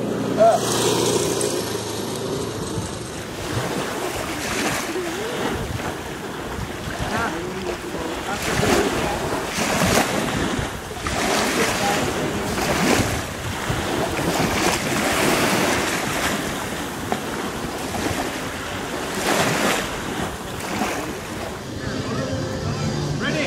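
Small waves washing onto a pebble beach, the wash rising and falling every second or two, with wind on the microphone.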